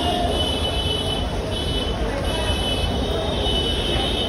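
Busy city street ambience: a steady rumble of road traffic with voices in the background.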